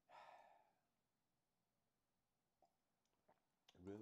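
A man's audible sigh, an exhale lasting about a second that fades out, followed by near silence with a couple of faint mouth clicks; speech begins just before the end.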